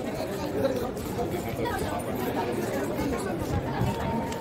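Chatter of many people talking at once, a steady murmur of indistinct voices with no single clear speaker.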